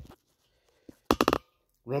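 A single sharp click at the start, then a quick run of several sharp clicks and knocks about a second in: handling noise from the phone and acoustic guitar being moved.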